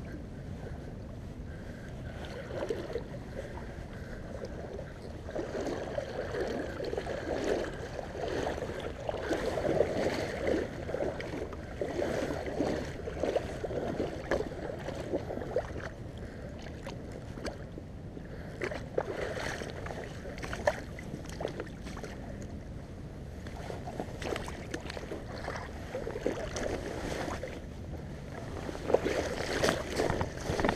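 Shallow river water sloshing and splashing irregularly close by, with wind rumbling on the microphone, while a hooked steelhead is played in at the water's edge.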